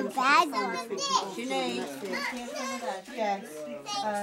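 Indistinct overlapping chatter, with children's voices among it.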